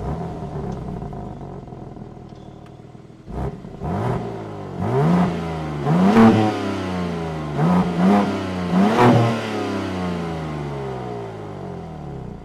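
BMW M2's S58 three-litre twin-turbo straight-six heard at the quad exhaust tips. It eases down from a fast idle, then is blipped about six times, each rev rising and falling quickly.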